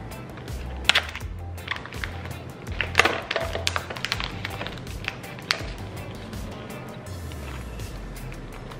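Plastic film on a sausage package crinkling and crackling in sharp bursts as it is torn open and peeled off the tray, over background music.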